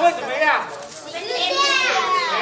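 Speech only: a man asks a question, then, about halfway in, a group of children call out the answer together.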